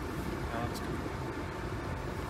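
Steady road and engine noise of a small car being driven, heard inside the cabin.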